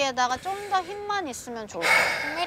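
Speech only: a woman talking, giving a singer vocal direction.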